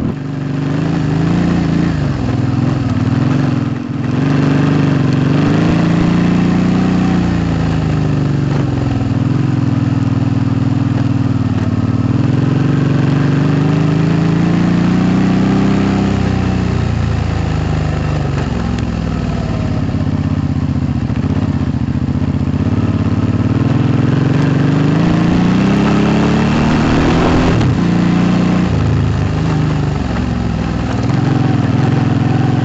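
2008 Suzuki V-Strom 650's V-twin engine running through a Delkevic aftermarket exhaust while being ridden along a dirt track. The engine note rises and falls repeatedly as the throttle is worked, with a brief dip about four seconds in.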